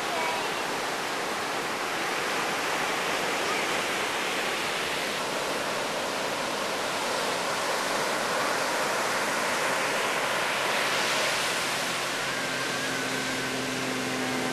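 Large hurricane swell breaking and washing up a sandy beach: a steady rushing noise of surf and whitewater. Near the end a faint steady hum joins in.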